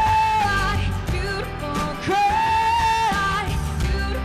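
Female pop vocalist singing live over instrumental backing, holding a long high note at the start and another about two seconds in.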